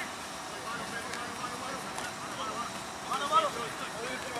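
Rugby players' voices calling out across an open training field, faint and overlapping, with a louder call about three seconds in. A single sharp smack at the very start.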